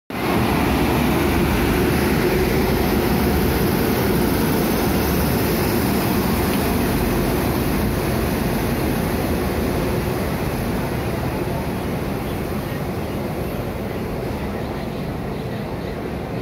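Electric locomotive and its passenger coaches rolling slowly past close by as the train pulls out: a steady rumble of wheels and running gear that eases off a little after about ten seconds.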